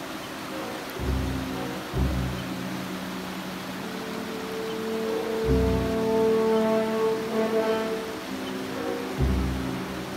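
Slow instrumental background music with long held notes and deep bass notes entering about a second in and again several times. Underneath it is a steady rush of river water running over rocks.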